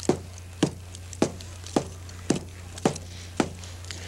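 Stone chopping tool striking a tree trunk with steady, evenly spaced blows, about two a second, seven in all: an archaeologist chopping with a prehistoric stone tool to reproduce ancient cut marks.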